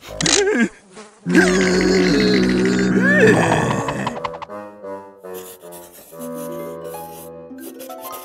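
Cartoon sound effects for a bad smell: a fly-like buzzing with a wordless gagging, retching voice, loudest from about one to three seconds in. Steadier music notes follow in the second half.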